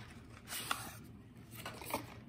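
Small cardboard box being unfolded and a plastic tube pulled out of it: a short rustle about half a second in, a sharp click just after, and another click near the end.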